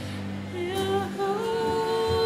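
Slow vocal music: a sustained low note, then a voice comes in about half a second in, singing long held notes in a gently stepping melody.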